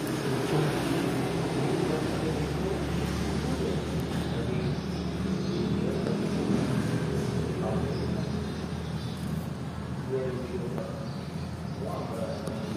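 Indistinct background voices over a steady low hum.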